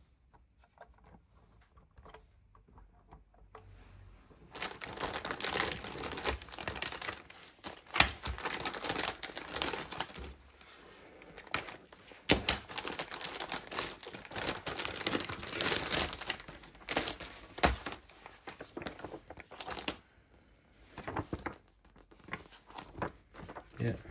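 Clear plastic packaging bag crinkling and rustling as it is handled and opened. The sound starts about four seconds in, runs in dense bursts with sharp crackles, and dies down after about twenty seconds.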